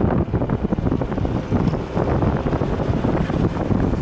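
Wind buffeting the microphone on a moving Yamaha NMAX scooter, a steady fluttering rush, with the scooter's running under it.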